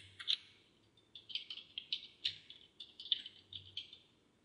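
Quick, irregular keystrokes on a computer keyboard, typing that starts about a second in, with a couple of single clicks just before it.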